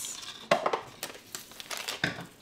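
A plastic sweetener pouch crinkling as it is handled, with a few short knocks of bottles and jars being moved on the countertop.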